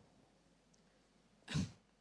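Mostly quiet, then about a second and a half in, one short breathy laugh from a woman.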